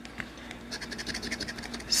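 A large coin-like scratching tool scraping the coating off a scratch-off lottery ticket: a rapid series of short scrapes, starting a little under a second in.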